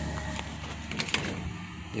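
Pickup truck engine idling as a low steady hum that fades about one and a half seconds in, with a few light clicks about a second in.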